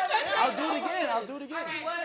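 Several people talking over one another, a busy chatter of voices.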